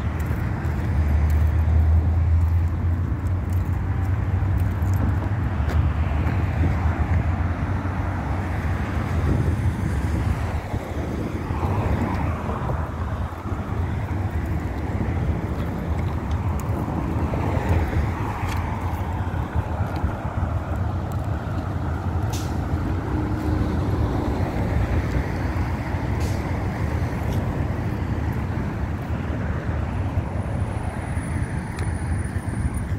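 Road traffic on a busy multi-lane road: a steady rumble of passing cars, with individual vehicles swelling past about twelve and eighteen seconds in.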